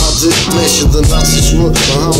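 Hip hop track: a man rapping over a beat with a heavy bass line and steady hi-hats.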